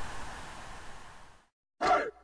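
Faint steady hiss that fades out into a moment of silence, then a single voice calling "Hey" near the end, the first call of a song.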